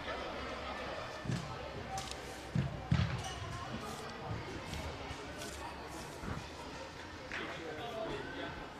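A football being kicked in a large indoor hall: a few dull, echoing thuds, the loudest about three seconds in, with the faint shouts and murmur of players in the background.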